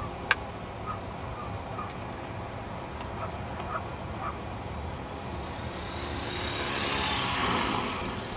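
450-size RC helicopter in an unpowered autorotation descent, its main rotor blades whooshing louder as it comes down and flares to land near the end, over steady wind noise on the microphone. A sharp click just after the start.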